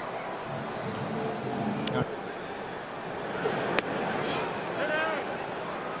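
Steady ballpark crowd murmur, with one sharp pop a little after halfway as the pitch smacks into the catcher's mitt on a checked swing.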